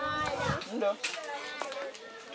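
Voices of several people, children among them, talking and calling.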